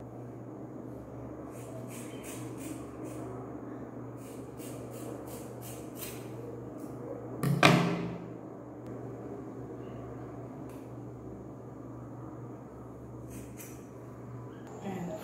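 Scissors snipping through a thick lock of long hair, in short crisp cuts through the first half and again near the end. One louder knock comes about halfway through, all over a steady low hum.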